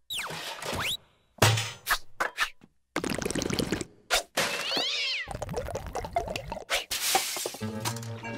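Cartoon soundtrack of music with comic sound effects: pitch glides sliding up and down near the start and again midway, a few sharp knocks, and a hissing rush near the end.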